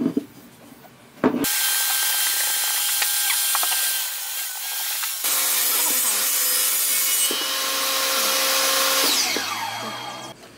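A few short wooden knocks, then an electric woodworking power tool running loud and steady for about eight seconds, winding down with a falling whine near the end.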